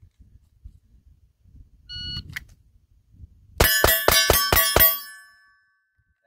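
A shot-timer beep, then about a second and a half later six rapid pistol shots, about four a second, from a Smith & Wesson M&P 2.0 Metal fitted with a DPM multi-spring recoil reduction system. Steel targets ring with the hits and fade out about half a second after the last shot.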